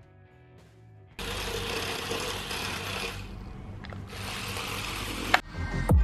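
The small geared DC motors of a 3D-printed four-wheel RC car whir steadily as it drives, starting about a second in over faint music. Near the end there is a sharp click, and louder electronic music comes in.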